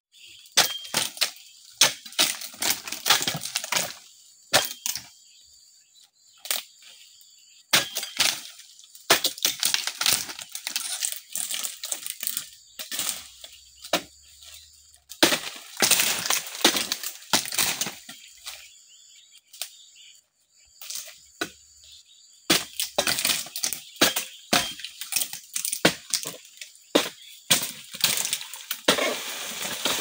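Repeated strikes of a dodos, a chisel blade on a long pole, chopping into oil palm frond bases, with cracking and rustling as the fronds split and fall. The strikes come in bursts of rapid blows separated by pauses of a second or two.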